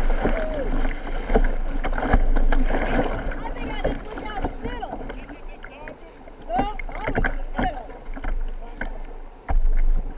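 Whitewater rapids rushing and splashing around a kayak, close on the bow, with paddle strokes slapping the water. The rush is loudest for the first few seconds and drops away as the boat comes out into calmer water.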